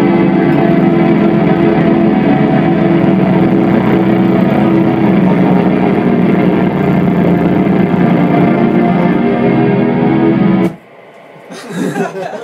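A rock band playing loud, with distorted electric guitar and keyboard, then cutting off abruptly about eleven seconds in.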